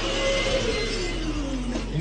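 Electric hand dryer winding down after being switched off: the motor's whine falls steadily in pitch over about a second and a half as the rush of air dies away.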